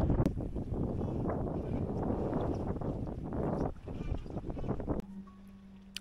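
Wind buffeting the microphone on the deck of a yacht under way at sea. About five seconds in it cuts off abruptly, leaving a much quieter steady low hum.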